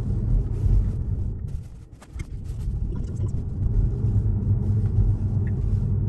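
Road and tyre rumble heard inside an electric Tesla's cabin while driving at about 20 mph, dipping briefly about two seconds in.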